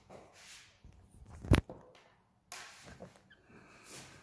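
Faint room noise with one sharp click about a second and a half in.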